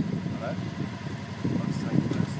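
Kawasaki Teryx 800 side-by-side's V-twin engine idling steadily with the vehicle at a standstill.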